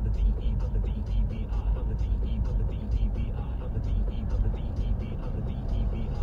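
Steady low rumble of a car's engine and tyres heard from inside the cabin while driving, with a voice running underneath.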